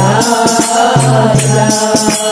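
Telugu devotional bhajan to Shiva: sung voices over a low held tone, with evenly repeated percussion strikes.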